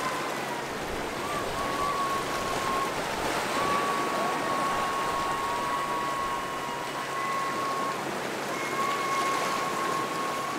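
Small ocean waves washing and splashing against a rocky lava shoreline in a steady wash of water noise. Thin, high held tones come and go over it, with a short break about three seconds in and another about eight seconds in.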